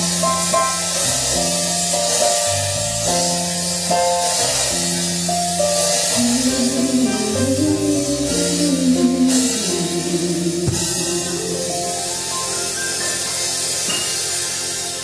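Live band playing an instrumental passage: a harmonica holds and moves between sustained melody notes over bass, guitar and a drum kit with steady cymbals.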